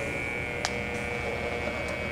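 Y-axis power feed motor on a Bridgeport Series I milling machine running and driving the table at a fairly fast feed: a steady electric hum with a high whine. One short click about two-thirds of a second in.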